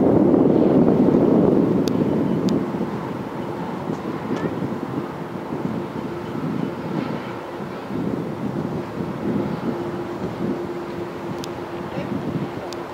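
Distant Boeing 777-300ER on final approach: a low steady jet-engine rumble with a faint held humming tone that grows a little stronger toward the end. Wind noise on the microphone is loudest for the first two seconds or so.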